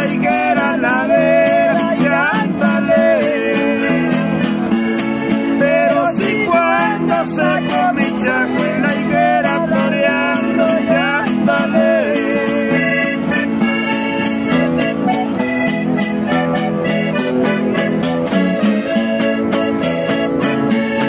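A woman and a man singing a duet over strummed acoustic guitar. About twelve seconds in the voices drop out and the guitars play on alone.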